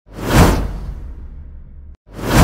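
Cinematic whoosh sound effect: a rushing swell that peaks about half a second in, then fades into a low rumble that cuts off abruptly near the end.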